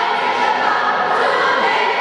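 A large group of voices singing a cheer together in unison, steady and continuous.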